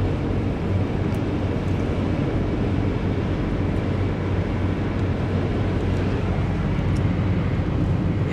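Steady road and tyre noise with a low engine hum, heard inside a car's cabin at interstate speed.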